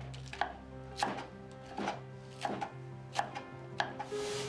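Kitchen knife chopping lettuce on a wooden cutting board: a run of sharp knocks, roughly one every two-thirds of a second, over soft background music with held notes.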